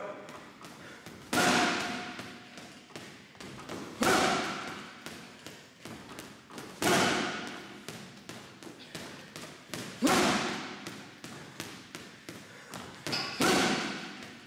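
Boxing gloves striking a heavy punching bag: a quick, continuous run of light single punches, broken about every three seconds by a much harder power shot, five in all. The hard hits echo around the room.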